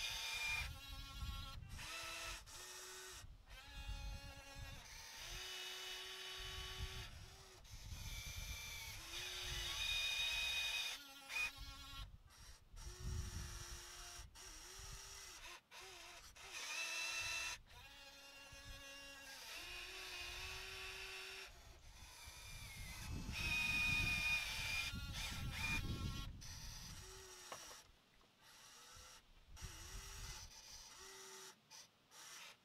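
Small electric motors of a 1/14-scale RC excavator whining in repeated short starts and stops, the pitch shifting as the boom, arm and bucket are worked, with a louder run with more low rumble near the end.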